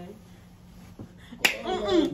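A single sharp hand snap about one and a half seconds in, after a moment of quiet room sound, followed at once by a voice.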